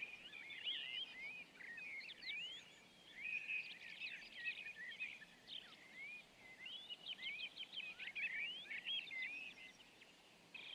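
Woodland songbirds singing: a busy chorus of quick chirps and whistles, with a couple of brief lulls.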